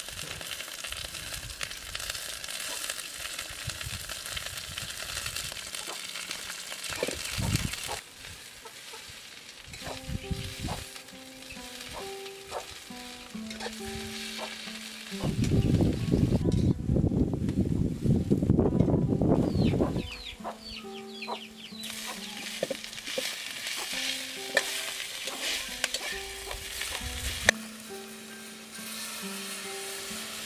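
Watercress stir-frying in a hot steel wok: oil sizzling and a metal spatula stirring and scraping. The frying is loudest in a burst of a few seconds around the middle.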